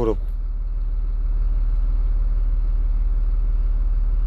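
Steady low rumble of heavy diesel machinery running, a wheel loader working at a dump truck, growing slightly louder about a second in.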